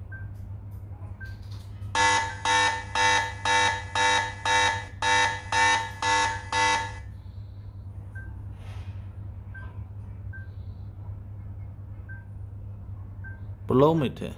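A rugged smartphone's built-in alarm app sounding through its loudspeaker: a pitched alarm beep repeating about twice a second for some five seconds, with a short break in the middle. Faint tap clicks and a steady low hum lie under it, and a brief rising sound comes at the very end.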